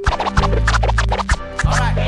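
Hip-hop beat with turntable scratching over a deep bass line and drums; the scratches come mostly in the second half.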